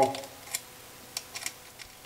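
A few light, separate metal clicks, about four spread over two seconds, as a magnet pickup tool is worked inside the shift-detent bore of a Porsche 915 transaxle case to draw out the detent spring and ball.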